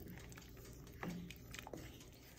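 Quiet stirring of a wooden spoon through soup in a stainless steel pot, with a few faint taps and scrapes, the clearest about a second in.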